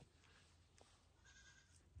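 Near silence, with a faint goat bleat about one and a half seconds in.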